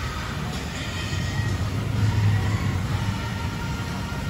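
Outdoor amusement-park ambience: a steady low rumble with faint music playing.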